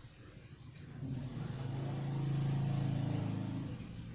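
A passing motor vehicle: a low engine hum that swells from about a second in, is loudest midway, and fades away near the end.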